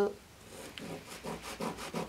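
Pen scratching across brown pattern paper as a line is drawn, a series of soft scratchy strokes starting about half a second in, with the paper rubbing under the hand.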